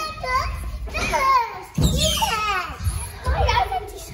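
Young children squealing and shouting excitedly as they play, with a couple of dull thumps underneath.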